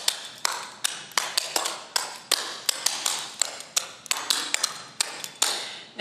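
Clogging shoe taps clicking on a hardwood floor in a quick, uneven rhythm of sharp strikes, about three to four a second. The pattern is the double steps, brush-ups and basics of a beginner clogging sequence danced with quarter turns.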